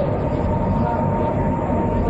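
Steady low rumble with a faint, level humming tone above it.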